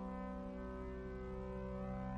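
A steady low drone of several held pitches sounding together, a sustained ambient drone accompanying the performance.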